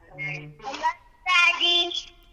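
A young child's voice speaking in two short, high-pitched phrases.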